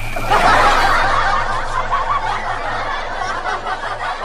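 Laughter: overlapping snickering and chuckling that starts just after the opening and carries on.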